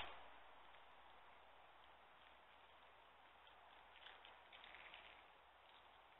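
Near silence: faint room hiss, with a few soft clicks and rustles about four to five seconds in from small plastic toy pieces being handled.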